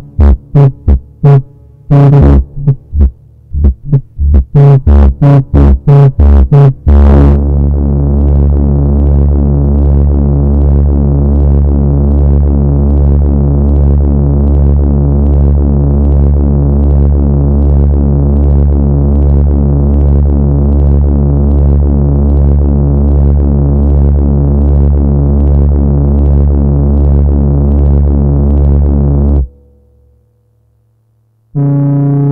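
EMS Synthi AKS analog synthesizer sounding a low, buzzy tone that is chopped into irregular stuttering pulses for about the first seven seconds. It then settles into one steady low drone, which stops shortly before the end.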